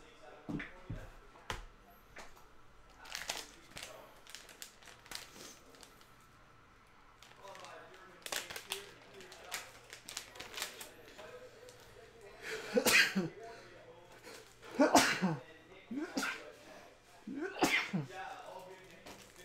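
A man sneezing three times, roughly two seconds apart, in the second half; before that, a few light clicks and knocks from handling cards in plastic holders.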